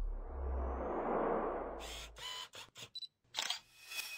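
Camera-themed logo sound effect: a low whoosh swelling for about two seconds, then a quick run of camera shutter clicks, and a last click with a brief ringing tone near the end.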